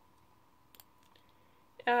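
Near silence broken by a single faint sharp click a little under a second in: a computer mouse click on the online quiz.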